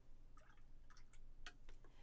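Near silence with a few faint clicks and taps of a paintbrush being worked in paint on a plastic palette and moved to a metal water can.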